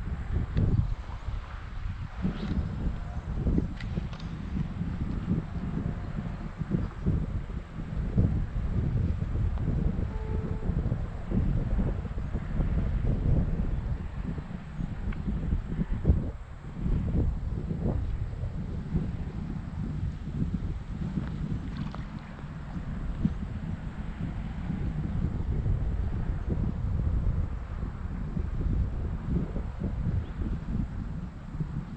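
Wind buffeting the microphone: a gusty low rumble that rises and falls throughout.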